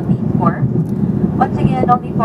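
Steady airliner cabin noise in flight: engine and airflow noise inside the cabin, with people's voices talking over it twice.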